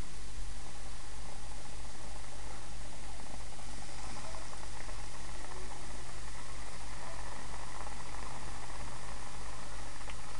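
Batter-coated frozen Oreos deep-frying in hot oil in a stainless steel pot: a steady sizzling hiss of bubbling oil.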